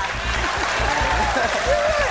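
Studio audience applauding, with a voice rising over it in the second half.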